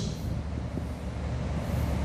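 A low, steady rumble of background noise, with faint scratching from a marker writing on a whiteboard.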